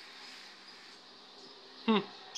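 A steady, low buzzing hum with a faint hiss, then a person's short, falling 'hmm' near the end, which is the loudest sound.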